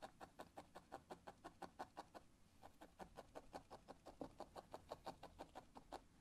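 A felting needle stabbing repeatedly into wool on a pad: a faint, fast, even run of soft clicks, about six or seven a second, with a short break midway.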